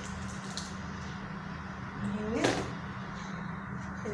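A steady low hum, with one brief rising vocal sound about two and a half seconds in.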